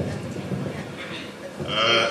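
A man's voice over the hall's microphone and loudspeakers making a drawn-out hesitation sound between phrases rather than words: a low, rough buzz, then a louder, higher wavering vowel near the end.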